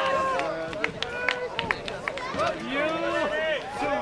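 Several nearby voices talking over one another, spectator chatter at a track meet, with a few sharp clicks in the first half.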